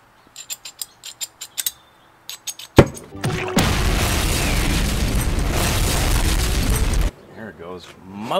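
A torch striker clicking about a dozen times at an oxy-acetylene torch, ending in one sharp pop as the torch lights. Then a cartoon explosion sound effect: a loud, long rumble that cuts off suddenly.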